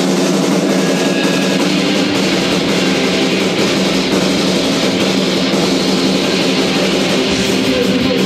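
Live punk rock band playing loud, with electric guitar and a drum kit.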